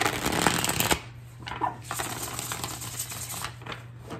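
A deck of tarot cards being shuffled by hand: a loud burst of quick riffling clicks in the first second, then a longer, softer stretch of shuffling about two seconds in.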